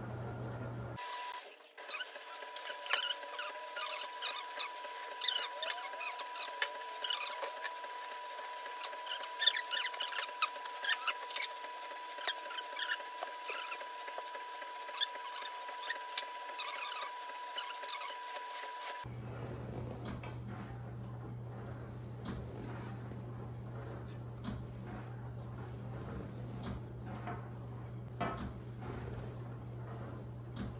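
Foam mattress being cut along a straightedge: a run of short squeaks and scratchy strokes as the blade drags through the foam, over a steady high tone for most of the first two-thirds. After that come quieter handling clicks and rustles.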